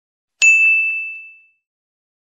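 A single bright bell-like 'ding' notification sound effect, struck once about half a second in and ringing out over about a second.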